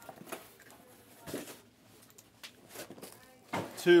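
Quiet room with a few soft clicks and faint voices in the background, then a man says a word near the end.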